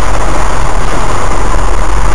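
Four-by-four's engine heard from inside the cab, a loud, steady low rumble as the vehicle crawls through deep muddy ruts.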